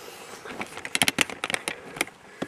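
Irregular crackling clicks and knocks from the camera being handled and carried, starting about half a second in and coming thick and fast.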